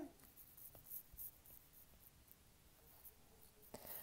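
Faint scratching and light tapping of a stylus writing on a tablet screen, over near-silent room tone.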